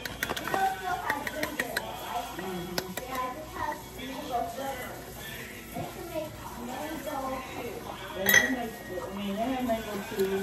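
A metal spoon and measuring cup clinking and scraping against a metal mixing bowl while brownie batter is mixed. There is a quick run of light clinks in the first two seconds and one sharp, louder clink about eight seconds in.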